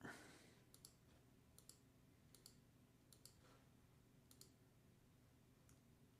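Faint computer mouse clicks in quick pairs, about one pair a second, five pairs and then a single click near the end, over near-silent room tone. A brief soft rush of noise sits at the very start.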